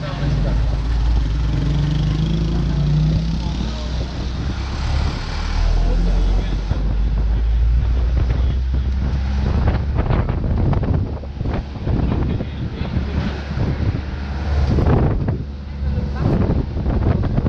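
Wind buffeting the microphone over the steady low rumble of a moving road vehicle, in gusts that come hardest near the end.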